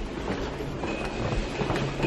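Metal hotel luggage cart rolling over carpet, its wheels and loaded frame making a steady rolling rattle.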